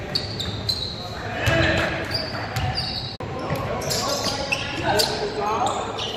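Basketball game sounds echoing in a gym: a ball bouncing on the hardwood, short high sneaker squeaks again and again, and the voices and shouts of players and spectators.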